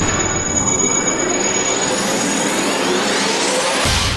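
Logo sound effect: a dense, noisy whoosh that rises steadily in pitch and builds, then cuts off sharply near the end as the logo settles.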